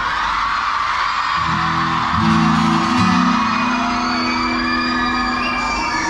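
Live band starting a number: sustained guitar and keyboard chords come in about a second and a half in, over a crowd's whooping and cheering in a large hall.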